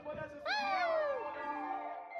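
A cat meowing once: a single long meow that rises and then falls in pitch, over background music.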